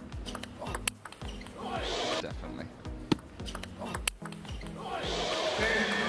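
Background music with a steady beat over a table tennis rally. The ball's strikes and bounces make a few sharp clicks, near the start, about a second in, and again around three and four seconds in.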